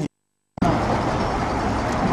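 The sound cuts out to total silence for about half a second, then a steady rushing noise runs on with no speech.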